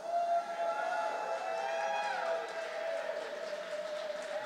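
Quiet passage of live band music: several sustained tones held together as a chord, a few of them sliding down in pitch about halfway through.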